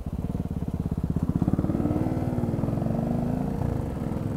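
Motorcycle engine heard close up, pulling away and accelerating, its pitch rising over the first couple of seconds and then levelling off.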